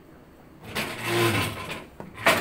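A loud scraping and rustling noise close to the microphone, lasting about a second, as someone moves right beside it.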